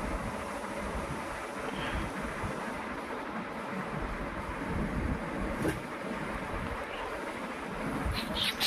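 Steady low rushing background noise, with one faint click a little past the middle.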